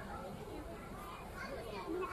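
Indistinct background chatter of many voices in a busy fast-food restaurant dining room.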